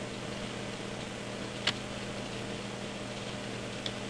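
Steady low electrical hum and hiss of the recording's room tone, with two faint short clicks, one a little under halfway through and one near the end.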